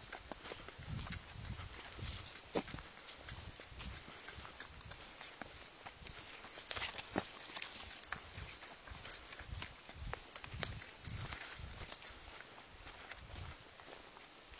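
Footsteps of a person walking on a dirt forest trail, soft thuds about two a second, with scattered sharp clicks.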